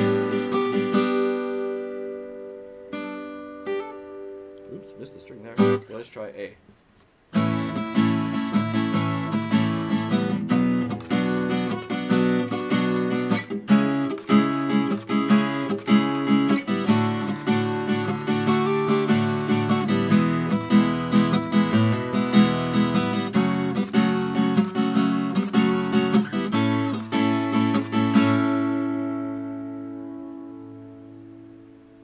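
Seagull Natural Elements Mini Jumbo acoustic guitar, solid spruce top with maple back and sides, strummed through chords. A chord rings and fades over the first few seconds, there is a brief silent gap about seven seconds in, then steady strumming that ends on a chord left ringing out.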